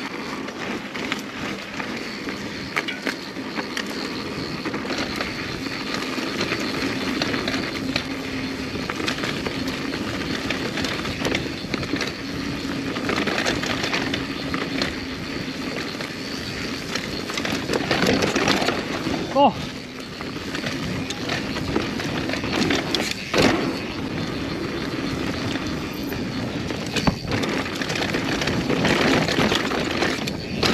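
Mountain bike riding fast down a dirt trail: tyres rolling and rumbling over the dirt, the bike rattling over roots and rocks, with a few sharper knocks from hard bumps late in the run.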